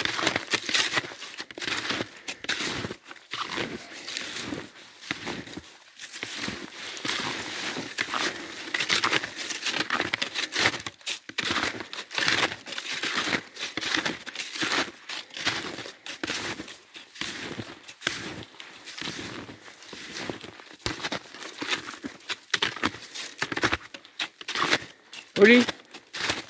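Footsteps crunching through deep snow on a steep climb: an irregular, continuous run of short crunches.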